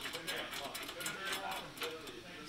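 Small metallic clicks and rattles of a steel eye bolt and nut being turned by hand against a steel bracket, a quick irregular run of light ticks.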